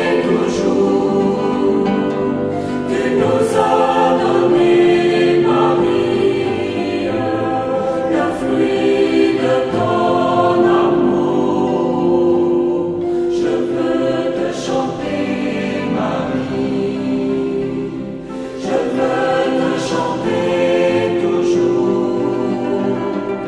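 Music: a choir singing a French Marian hymn, with long held notes that carry on without a break.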